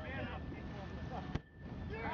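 Wind on the microphone and a low rumble aboard a boat under way, with faint voices in the background. A sharp click comes about one and a half seconds in, followed by a brief drop in level.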